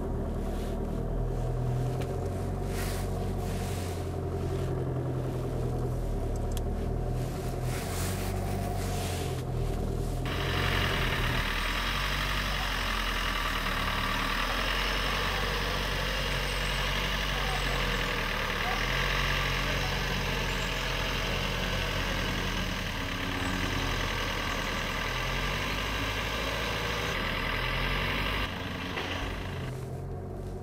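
Vauxhall Corsa engine running at low revs while the car reverses slowly, heard as a steady low hum inside the cabin. About ten seconds in, the sound switches to an outside recording with a steady hiss over the engine, and the quieter cabin hum returns near the end.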